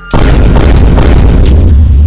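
A loud boom-and-rumble sound effect that hits about a tenth of a second in and holds steady as a dense, bass-heavy noise, timed to the title text.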